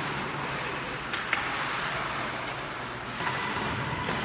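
Ice hockey play on a rink: a steady scraping hiss of skates on the ice, with two sharp clicks about a second in.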